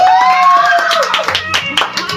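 A woman's long held sung note in a pop ballad, slightly rising and ending about a second in, over the song's backing, with a scatter of hand claps from the listeners in the room.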